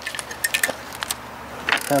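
A few light, separate clicks and clinks as the metal parts of a stripped-down exercise bike are handled.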